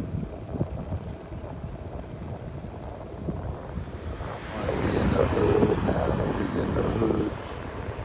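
Wind buffeting the microphone as the camera moves along outdoors, a low rumble that grows louder about halfway through.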